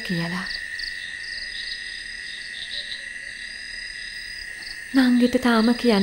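Crickets chirring in a steady, high-pitched night chorus that holds without a break.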